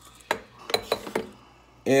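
Glass coffee carafe set back onto a Mr. Coffee drip machine's warming plate: a quick run of about five light clinks and knocks of glass against the machine.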